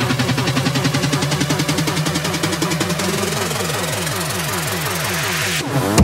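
Hard electronic dance track in a DJ mix, in a build-up: rapid repeated synth notes over a steady pulse, with a rising noise sweep through the second half that thins out just before the drop lands at the very end.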